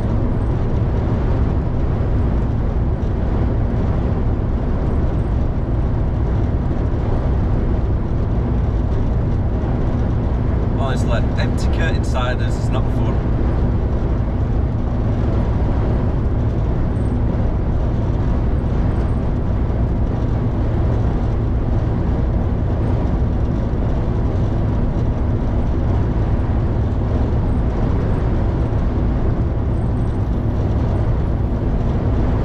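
Steady engine and road noise inside an HGV tractor unit's cab at motorway speed, with wind buffeting the lorry. A brief cluster of sharper, higher sounds comes about eleven seconds in.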